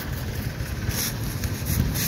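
Barrel stove maple sap evaporator running: steady noise of sap at a rolling boil in the steel pans over the wood fire.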